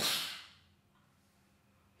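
A gunshot imitated with the mouth: one sudden hissing burst that fades away within about half a second.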